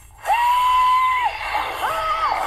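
A high-pitched cartoon voice screaming: one cry held steady for about a second, then a second, higher cry starting near the end.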